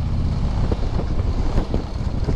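Harley-Davidson touring motorcycle's V-twin engine running steadily while cruising slowly, a low rumble heard from the rider's seat.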